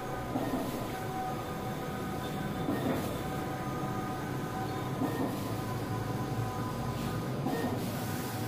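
Skyjet 512 large-format flex printer running while printing: a steady whir of fans and motors with hum lines, swelling about every two and a half seconds as the print carriage sweeps back and forth.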